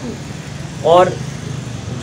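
A pause in a man's speech filled with steady background noise, broken by one short spoken word about a second in.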